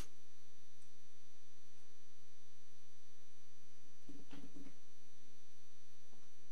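Steady electrical mains hum on the recording. About four seconds in, a brief sound comes in three quick pulses.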